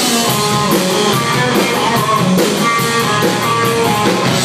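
Rock band playing, with guitar lines over a drum kit beat.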